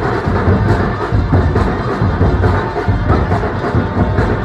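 Live carnival street band playing: snare and bass drums keep a steady driving beat under saxophones and other horns, loud and close.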